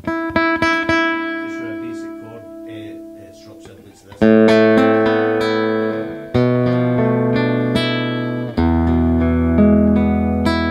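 Godin Multiac Nylon SA nylon-string guitar played fingerstyle: a held pedal note with quick plucked notes over it, then three loud chords about two seconds apart, each on a lower bass note and left to ring.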